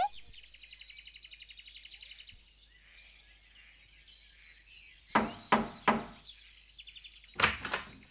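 A bird's rapid chirping trill, then knocks on a wooden door: three about five seconds in and two more near the end.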